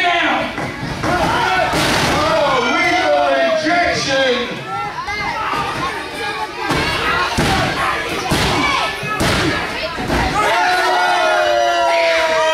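Small crowd shouting and cheering, with three sharp thumps about a second apart in the middle: the referee's hand slapping the wrestling ring mat for a three-count pinfall.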